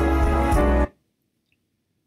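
Live band playing, with keyboard chords and bass to the fore; the music cuts off abruptly about a second in and is followed by silence.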